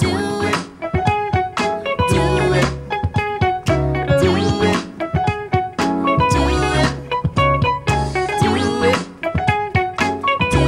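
Live funk band playing a steady groove: electric guitar and piano and keyboards over a repeating beat.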